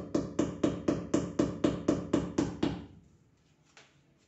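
Hammer tapping a nailed plastic cable clip into a wall, about four quick strikes a second, stopping about three seconds in.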